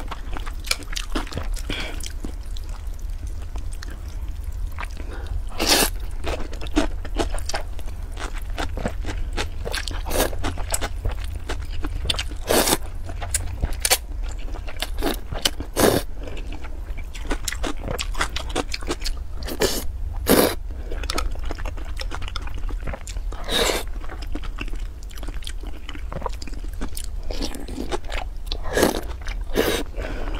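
Close-miked eating of a bowl of cold noodles with chopsticks: repeated slurps and bites with crunchy chewing, coming irregularly every second or two, with a handful of louder ones spread through.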